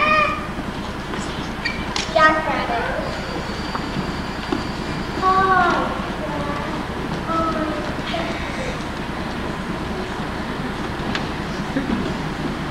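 A young child's high voice in a few short utterances, about two seconds in, around the middle and again a little later, over a steady background hiss.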